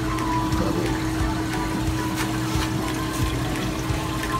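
Water running and trickling through a shop's aquarium filtration trough, over a steady low hum, with music playing in the background.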